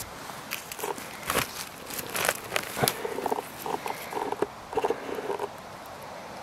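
Dry forest leaf litter and twigs crackling and snapping in sharp clicks, as a porcini is handled among them. Short pitched blips of unknown source repeat several times from about halfway on.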